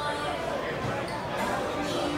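Chatter of many people talking in a large, echoing station concourse, with no single voice standing out.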